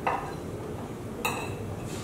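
Cutlery clinking against a dinner plate twice, once at the start and again about a second later, the second clink ringing briefly.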